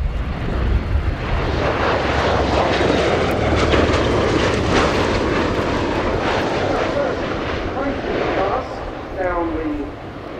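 CV-22B Osprey tiltrotor flying past low in aircraft mode, its two turboshaft engines and large proprotors making a loud rushing engine and rotor noise. The noise builds about a second in, holds, then fades near the end as the aircraft moves away.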